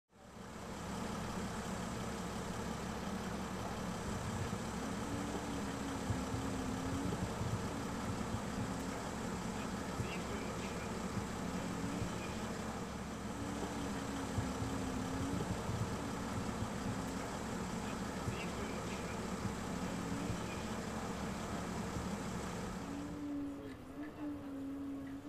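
A vehicle engine idling steadily, dropping away about a second before the end.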